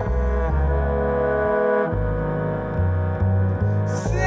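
Instrumental passage of the song: double bass and low strings hold long, steady notes, the bass line stepping to a new note every second or so, with no singing.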